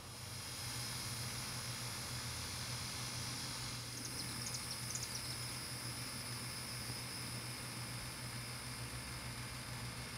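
Outdoor garden ambience: a steady low hum under a steady high-pitched drone, with a few quick high chirps about four seconds in.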